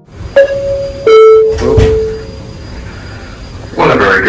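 Ship's public-address chime: two ringing notes, a higher short one and then a lower, longer one, over a steady low rumble. The chime signals that a shipboard announcement is about to start.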